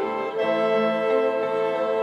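Mixed instrumental ensemble of violins, flute, saxophones, electric guitar and keyboards playing sustained chords together. The sound swells and brightens about half a second in, as the wind instruments come in strongly.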